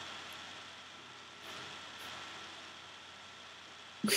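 Faint steady background hiss with a thin, steady high tone running under it: recording noise in a quiet room.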